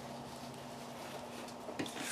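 Quiet room tone with a faint steady hum. Near the end comes a brief soft handling noise as a paper towel is picked up and laid over the craft mat.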